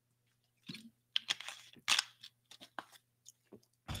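A water bottle being handled and opened: a run of irregular small clicks and crackles.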